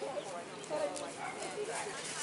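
Outdoor street ambience of people walking by: indistinct voices of passersby and a few sharp footstep clicks on pavement.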